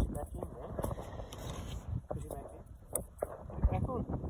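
Plastic clicks and knocks as the washer bottle's extendable filler spout is pushed back down and the cap is put back on, with handling noise in between.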